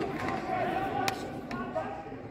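Indistinct voices of players and onlookers around a football pitch, with one sharp thud about a second in as the ball is kicked.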